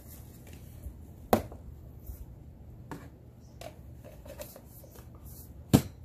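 Cup and containers being handled and set down on a table: a few light clicks and rattles, with two sharp knocks, one about a second in and a louder one near the end.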